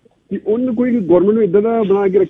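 A man's voice starting to speak again after a brief pause, sounding narrow and telephone-like.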